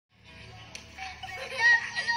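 Music with a voice in it, and a single sharp tap about a third of the way in.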